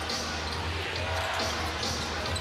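Basketball dribbling on a hardwood court, a few sharp bounces over the steady hum of an arena crowd.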